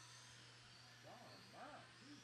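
Near silence: a faint steady hum, with a few faint, brief pitched sounds about a second in.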